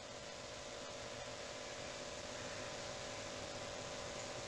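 Steady low hiss with a faint hum, the background noise of a desk microphone's recording, with a few faint clicks in the first second or so.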